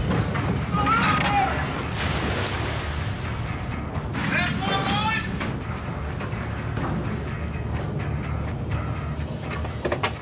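Fishing boat's diesel engine running with a steady low rumble as water rushes along the hull, with a surge of spray about two seconds in. Brief high calls come about a second in and again about four and a half seconds in.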